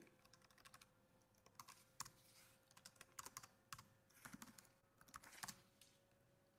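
Faint, irregular keystrokes on a computer keyboard as a short name is typed.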